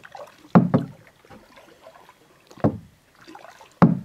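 A paddle knocking against a plastic kayak's hull: hollow knocks, a quick double knock about half a second in, then single ones a little before three seconds and near the end, with faint paddle-in-water sounds between.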